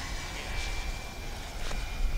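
A 120 mm electric ducted fan on a large RC jet, heard in flight at half throttle: a steady thin high whine over a faint rushing hiss and a low rumble.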